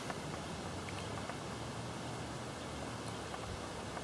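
Steady, low outdoor background noise with no distinct sound standing out.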